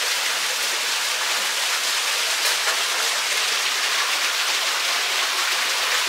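Steady rush and splash of water falling into a koi pond beneath a rockery.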